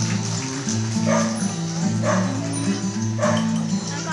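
A dog barking three times, about a second apart, over background music.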